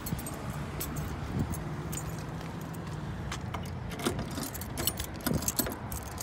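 A bunch of car keys jangling and clinking in a hand as they are sorted through for the trunk key, with scattered sharp clinks that come thicker in the second half.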